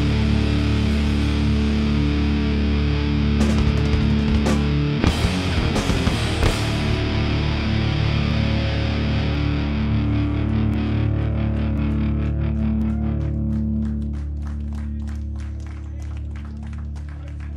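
Distorted electric guitar held in a sustained, droning chord through effects, with a few sharp clicks near the middle; over the last few seconds it fades and breaks into a rapid, even pulsing.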